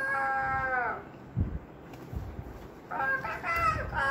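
A girl imitating a rooster's cock-a-doodle-doo with her voice: one crow trails off with a falling pitch about a second in, and a second crow begins near the end.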